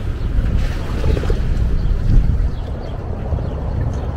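Wind buffeting the microphone in an uneven low rumble, over the wash of lake water against the shore.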